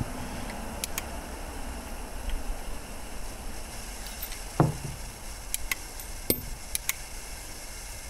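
Nagant M1895 revolver being unloaded by hand: scattered small metal clicks and ticks as the cases are pushed out of the cylinder through the loading gate, with one louder knock about halfway through. Some cases stick in their chambers, which the shooter wonders is from the cases swelling.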